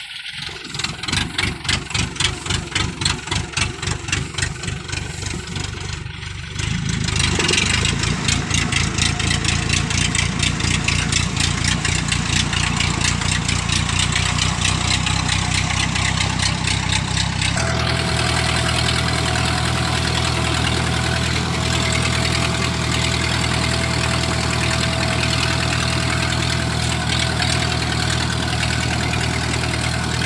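Diesel engine of a homemade tracked rice-hauling vehicle chugging under the load of about fifty sacks of rice as it crawls through a wet paddy. The pulsing engine note gets louder about seven seconds in, then turns to a steadier, even hum about two-thirds of the way through.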